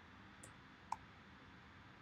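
Near silence broken by two short computer keyboard keystrokes, a faint one about half a second in and a sharper one just before the one-second mark.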